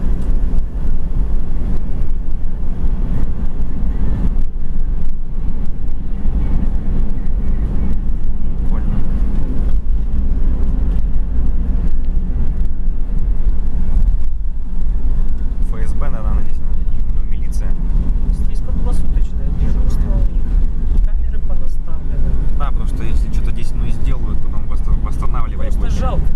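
Steady low rumble of a car's engine and tyres on the road, heard from inside the cabin while driving at highway speed, with faint voices coming and going in the second half.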